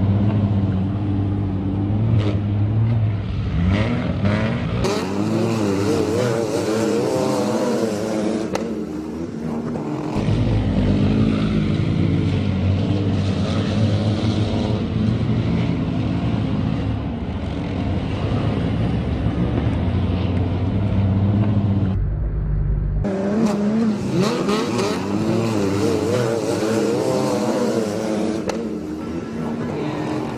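Several wingless sprint cars racing on a dirt oval, their engines rising and falling in pitch as they power through the turns. The sound breaks off and changes abruptly a few times.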